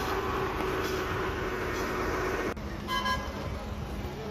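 Road traffic noise with vehicles running, and a vehicle horn giving one short toot about three seconds in.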